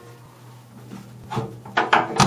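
Top hatch latches on a wooden submarine hull being worked by hand: after a quiet first second, a short rub and a couple of knocks against the wood, over a faint low hum.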